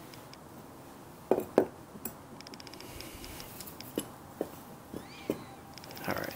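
Hard metal knocks and clinks from turbocharger parts being handled on a concrete floor: two sharp knocks close together about a second in, then a few lighter taps.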